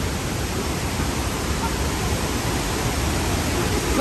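Steady rushing of a waterfall: an even, unbroken roar of falling water.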